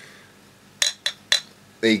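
Glass cider bottle clinking three times in quick succession, about a quarter of a second apart, each with a short bright ring.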